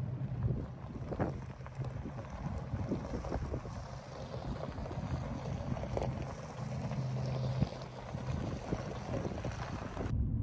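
Wind rumbling and buffeting on the microphone, uneven in strength, over a low steady hum.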